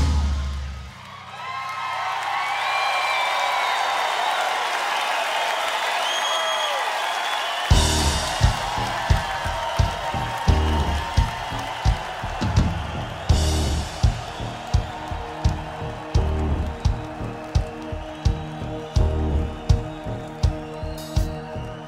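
A drum solo ends on a final hit, and a theatre crowd cheers and whistles for several seconds. About eight seconds in, the drum kit comes back with a steady beat under a held keyboard note as the band starts the next song.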